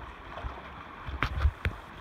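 Creek water splashing as a person in a dry suit strokes through it with his arms: several quick splashes close together in the second half.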